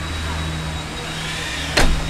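Steady low machine hum with a faint high whine, and a single sharp thump near the end as a motorcoach's side storage bay door is pushed shut.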